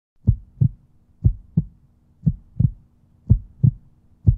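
Heartbeat sound effect: pairs of low thumps in a lub-dub rhythm, four pairs about a second apart, over a faint steady low tone.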